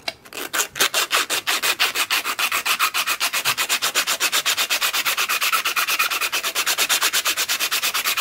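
A strip of sandpaper pulled back and forth by hand, shoe-shine style, over the edge of a lockpick handle blank held in a vise, rounding off its square edges. The strokes are quick and even in a steady rhythm.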